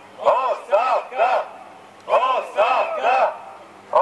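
Protesters shouting a three-syllable chant in unison. There are three sharp shouted syllables about half a second apart, repeated twice at a steady beat, and a third round starts at the very end.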